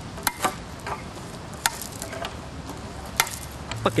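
A few sharp, separate knocks or clicks, four of them spaced irregularly, over a steady outdoor hiss.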